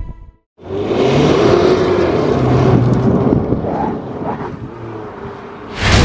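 Ford Mustang's engine accelerating, its note rising and falling over road noise, then dying down before the end.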